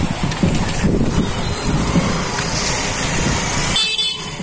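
Steady low rumble of outdoor noise, like an engine running close by.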